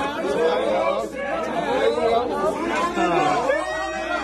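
Overlapping chatter of a group of people talking at once, no single voice standing out.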